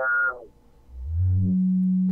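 Synthetic audio-feedback tones from an Ableton Live feedback loop filtered through EQ Eight: a pitched tone falls away in the first half second, there is a brief near-silent gap, then a low tone rises and settles into a steady drone.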